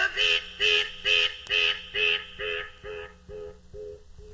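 Electronic DJ mix: a short processed sound repeated about twice a second as an echo, each repeat fainter until it nearly dies out.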